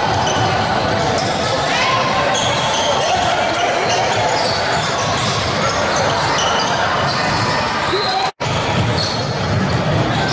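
Sound of a basketball game in a large, echoing gym: the ball bouncing, short sneaker squeaks and voices of players and spectators, all steady throughout. The sound drops out for a split second a little past eight seconds in.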